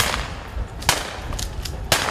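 Sharp, loud reports: three of them about a second apart, with fainter cracks in between, over a low steady rumble.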